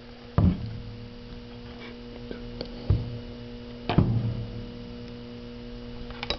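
A steady electrical hum with three knocks, about half a second, three seconds and four seconds in.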